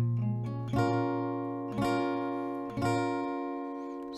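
Acoustic guitar with a capo on the first fret playing an A minor 7 chord. The notes are rolled one by one from the bass strings down and left ringing together, then the top strings get downstrokes about once a second, and the chord rings out and fades.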